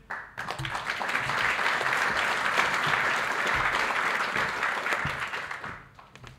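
Audience applauding: dense clapping from a seated crowd that builds over the first second, holds steady and dies away near the end.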